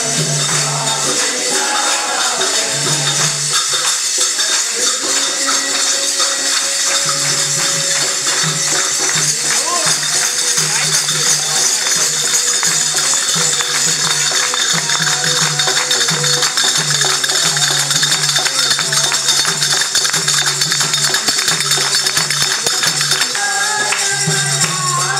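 A group of devotees singing a bhajan, with hand clapping and jingling hand percussion. A steady low beat sounds about once a second.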